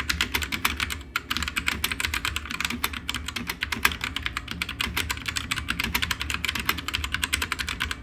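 Fast continuous typing on a Drevo Calibur V2 60% mechanical keyboard fitted with brown switches. It is a quick, dense run of key strokes, with short breaks about a second in and again near three seconds.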